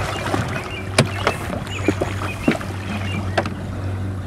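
Hooked blue catfish thrashing at the surface beside a boat as it is brought to the net: scattered splashes and sharp knocks over a steady low hum.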